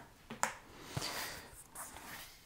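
Quiet handling sounds: a light tap about half a second in, as a small card is tossed onto the counter, then faint rustling as a hardcover photo album is handled.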